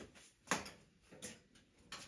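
A few light, short clicks and taps spaced roughly two-thirds of a second apart, the first the loudest: footsteps on a hard floor, heard in a small room.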